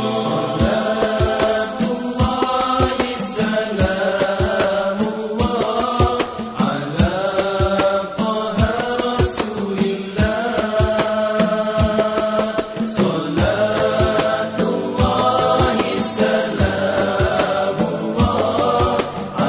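A nasyid sung by a group of male voices in a chant-like style, over hand-struck frame drums (rebana) beating a steady rhythm.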